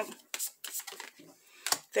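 Tarot cards being handled and one laid down on the spread: a few light clicks and slaps of card stock, the sharpest just before the end.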